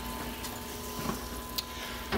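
Steady background hum and hiss with a faint constant tone, broken by a few faint light clicks.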